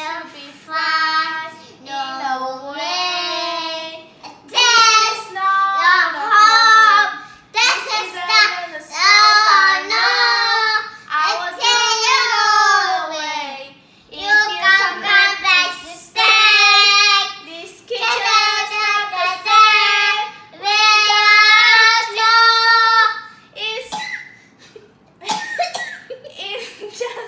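A girl and a small boy singing a song together without accompaniment, in short phrases with long held notes.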